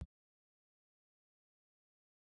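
Near silence: dead digital silence after a very brief blip at the very start.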